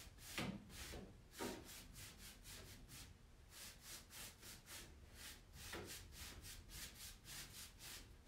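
Faint paintbrush strokes on a painted wooden wardrobe, a quick back-and-forth scrubbing rhythm of about three strokes a second. A couple of short, louder sounds break in during the first second and a half.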